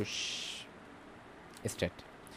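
A man's voice: a drawn-out hissing 's' for about half a second, then faint room tone, then two short murmured syllables just before the end.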